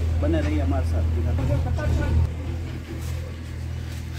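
A man talking for about two seconds over a steady low rumble, then quieter, broken voice sounds with the rumble going on underneath.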